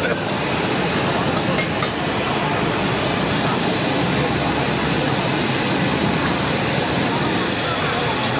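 Electric blower fan on a grill stall running close by with a steady, even rush of air.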